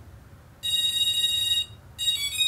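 Quadcopter brushless motors, driven by their ESCs, sound one electronic beep lasting about a second, starting just over half a second in. It is an ESC calibration tone, the ESCs confirming the low-throttle end point after the throttle was dropped from full to zero.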